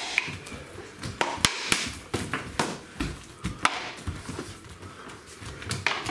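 Fighting sticks and a training tomahawk striking each other and a small round buckler during sparring. The result is a string of sharp clacks at irregular intervals, with two close together near the end, and a dull low thump about three seconds in.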